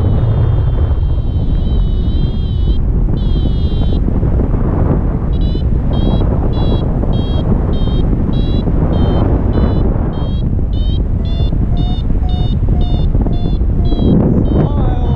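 Wind rushing over the camera microphone in flight, with a paragliding variometer's high beeps over it: a wavering tone for the first few seconds, then short even beeps at about two a second from about five seconds in, the vario's signal that the glider is climbing.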